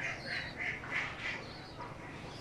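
Young pigeons (squabs) giving a rapid series of short, high, squeaky calls, about three a second. The run stops about a second and a half in.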